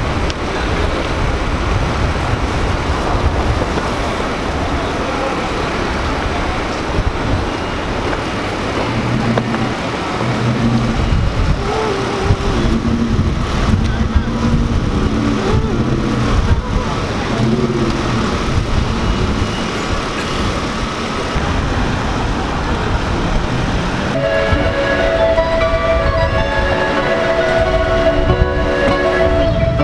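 Steady city noise with a heavy low rumble of subway trains and street traffic, with horn-like pitched tones in the middle stretch. Sustained musical tones come in about four seconds before the end.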